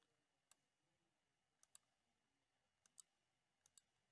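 Computer mouse clicking, about seven short, faint clicks, mostly in quick pairs spaced about a second apart, against near silence.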